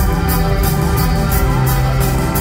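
A live band playing an instrumental passage: electric guitars and bass over drums, with a cymbal struck steadily about four times a second.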